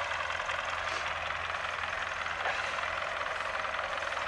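MTZ-80 tractor's four-cylinder diesel engine running steadily with an even low hum.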